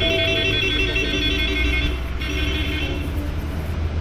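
A phone ringtone with a high, warbling trill rings for about two seconds, pauses briefly, then rings again for under a second. A low steady rumble runs underneath.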